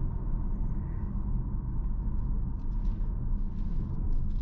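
Steady low cabin rumble of a Hyundai Tucson Plug-in Hybrid rolling slowly through a tight turn, mostly road and tyre noise heard from inside the car.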